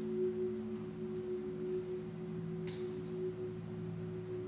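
Quiet, sustained electric guitar and bass guitar notes ringing together as a slow song intro, with no drums; a lower note swells in about halfway through.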